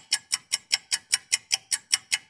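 Clock ticking sound effect: fast, even ticks, about five a second.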